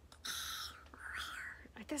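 A woman's breathy, whispered exclamations: two short whispers, the first about a quarter second in and the second about a second in, before ordinary speech resumes at the very end.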